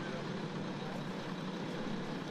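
Steady engine noise from an idling truck, most likely the concrete mixer truck on the job site.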